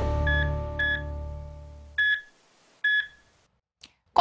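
Intro theme music's held chord fading out over about two seconds, with short electronic beeps: two soft ones in the first second, then two louder ones about a second apart.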